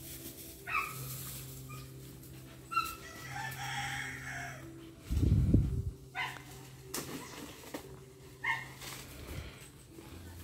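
A rooster crowing, with short chicken calls before and after it, over a steady low hum. A loud low rumble lasting about a second comes about five seconds in.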